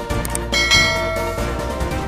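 Background music with a short click, then a bright bell chime about half a second in that rings for about a second and fades. This is the notification-bell sound effect of a subscribe-button animation.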